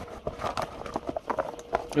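A deck of tarot cards being handled by hand: a quick, irregular run of small clicks and slaps.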